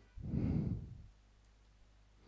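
A man's single breathy exhale, a sigh, lasting under a second near the start.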